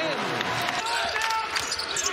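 Basketball game noise on a hardwood court: a few short, high sneaker squeaks around the middle, with the ball bouncing.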